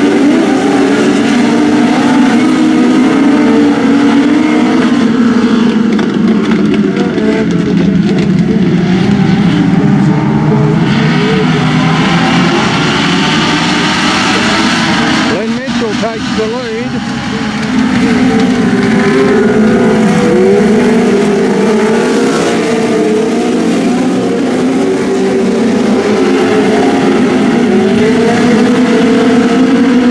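A pack of speedway race cars running on a dirt oval, several engines revving and overlapping as the cars go by. The engine noise drops for about two seconds just past the middle, then comes back up.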